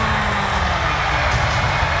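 Arena crowd cheering loudly with a deep rumble underneath, just after the winner's name is called; the tail of the announcer's drawn-out call fades at the start, and the noise cuts off suddenly near the end.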